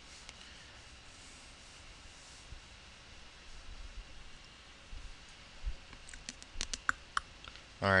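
Faint steady hiss, then a quick run of sharp clicks about six seconds in from someone working the laptop's controls.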